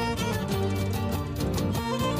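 Huayno cerreño played instrumentally by a small band: a violin carries the melody over strummed acoustic guitars and accordion, in a steady dance rhythm.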